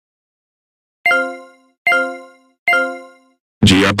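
A computer error chime sounds three times, evenly spaced about 0.8 s apart, each one ringing and fading quickly. A man's voice starts shouting near the end.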